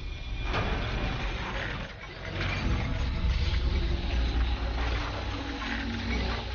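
TV title-sequence sound design: a deep, sustained rumble overlaid with whooshing sweeps, swelling about half a second in and again about two and a half seconds in.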